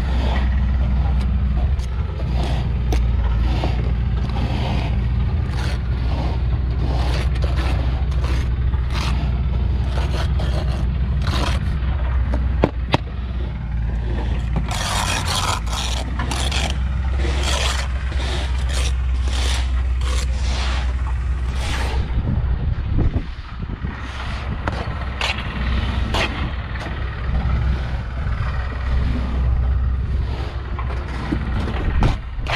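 Steel brick trowel scraping mortar off a board and knocking against bricks as they are laid: many short scrapes and taps, with a denser burst of scraping about halfway through. Under it runs a steady low hum.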